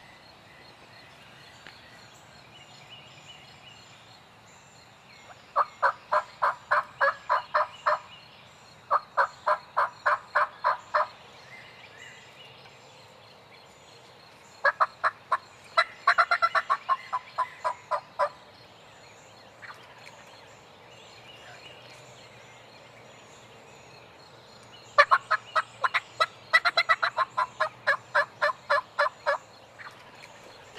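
Turkey calling in four runs of sharp notes, about four to five a second, with quiet gaps between them: a hunter's diaphragm mouth call and a wild tom turkey gobbling in answer.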